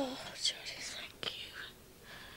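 A person whispering in a breathy voice, with a short sharp click about a second and a quarter in.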